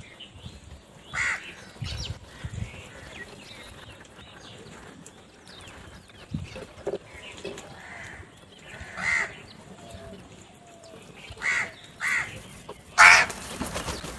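House crows cawing while feeding: about five short, scattered caws, the loudest one near the end.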